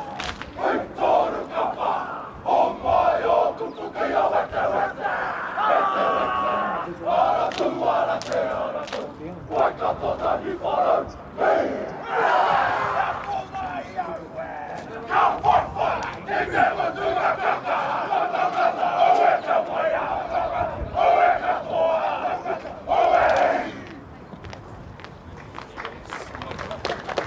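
A rugby team performing a haka: many young men's voices shouting and chanting in unison, with sharp slaps and stamps. It ends with a final shout about two seconds before the end.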